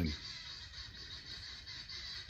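Faint background of steady high-pitched chirping, pulsing evenly several times a second, in a pause between spoken words.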